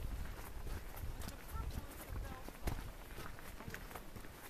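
Footsteps on a gravel trail, heard as a run of short clicks, with wind rumbling on the microphone.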